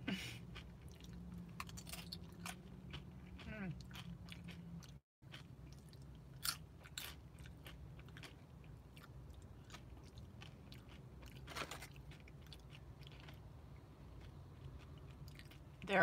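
Close-up chewing and crunching of tortilla chips, with many scattered crisp crunches. The sound cuts out for a moment about five seconds in.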